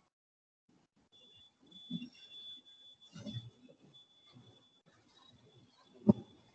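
Faint steady high-pitched tone over low room sound on a video-call line, starting about a second in and running on with brief breaks.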